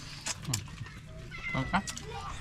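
A few small clicks and taps from people eating by hand at a table, and a brief thin high-pitched call late on, animal-like.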